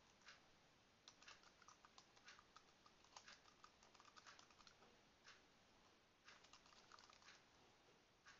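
Faint computer keyboard typing: a quick run of key clicks for a few seconds, a single click, then another short run near the end.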